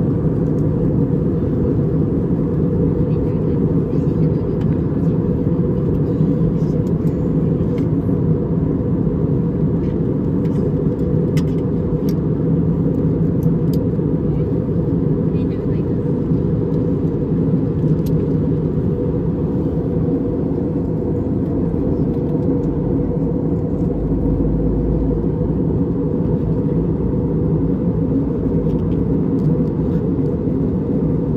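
Jet airliner cabin noise at cruise: a steady low rumble of engines and airflow with a constant hum, heard from inside the cabin by the window. A few faint clicks come in the middle.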